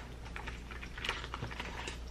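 Scattered light clicks and taps of small objects being handled and moved about, over a low steady hum.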